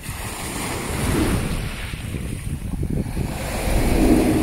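Wind buffeting the microphone over waves washing onto a sandy beach: a rough, gusty low rumble over a steady hiss, a little louder near the end.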